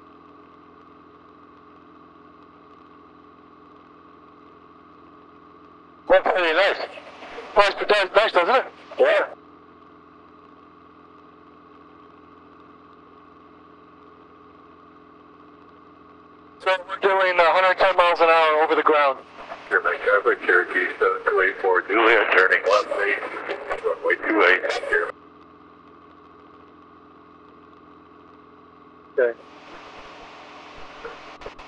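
Light aircraft's engine and propeller droning steadily in the cockpit, with two stretches of speech over it, one about six seconds in and a longer one from about seventeen to twenty-five seconds.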